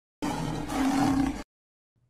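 A big-cat roar sound effect, just over a second long, that cuts off suddenly.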